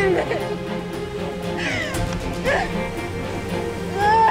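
Dramatic background music with sustained tones, and a woman crying out in anguish over it: a few short, falling, wailing cries.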